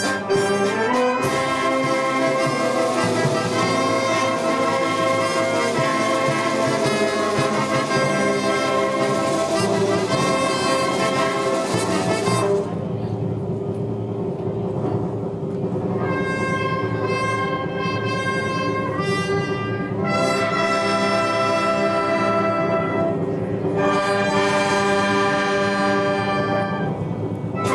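Wind band of brass and woodwinds playing slow, sustained chords. About halfway through the sound thins and grows quieter, and the full band comes back in near the end.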